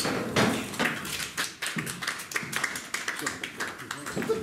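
Applause from a small audience just after the song ends: many irregular hand claps.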